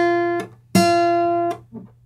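Acoustic guitar playing single plucked notes on the second string, each held at one steady pitch around F and then damped short. One note stops about half a second in and another rings from just under a second in to about a second and a half. These are half-step bends from E to F, pre-bent before the pluck and checked against the fretted F.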